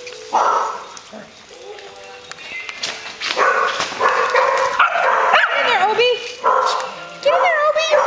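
Small dogs barking and yipping in repeated short bursts, with a few wavering, drawn-out calls about five to six seconds in.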